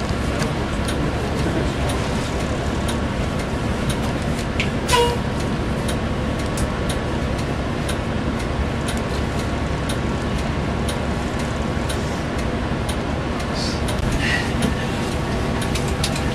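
Transit shuttle bus idling at a stop, heard from inside near the driver: a steady low drone with faint ticks. There is a sharp click with a brief tone about five seconds in.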